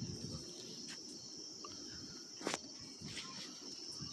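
Insects chirring steadily in a continuous high-pitched band, with a single sharp click about two and a half seconds in.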